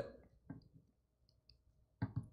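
Near silence: room tone with one faint click about half a second in and a couple of tinier ticks later.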